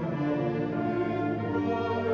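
School concert band of woodwinds and brass playing slow, sustained chords, accompanying a male voice singing the alma mater.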